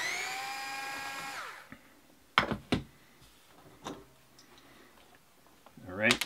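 Cordless power driver with a 7 mm nut driver spinning off an RC crawler's wheel nut: a steady whine for about a second and a half that winds down as the motor stops. Two sharp clicks follow a second later.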